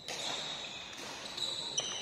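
Badminton rally: court shoes squeaking on the floor in high, held tones, with a couple of sharp racket-on-shuttlecock hits, the loudest near the end.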